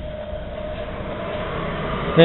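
Mescoli GLUP 29 pellet boiler's fan starting up just after switch-on: a steady whir that grows gradually louder, with a faint steady hum over it.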